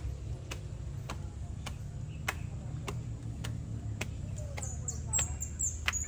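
Footsteps climbing concrete stairs: sharp, evenly spaced steps a bit under two a second, over a low steady rumble. Faint bird chirps come in near the end.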